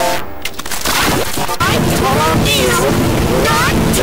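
Loud, heavily effects-processed audio (vocoder and bitcrusher style distortion) that starts suddenly out of silence. A dense noisy bed runs throughout, with warbling tones sliding up and down over it.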